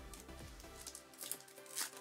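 Faint background music with a few short crinkles and rustles, about a second and a half apart, as a Pokémon card pack and its cards are handled.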